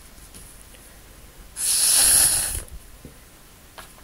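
One long puff of breath blown through a drinking straw to push a drop of watery paint across the paper, a breathy rush lasting about a second, starting about a second and a half in.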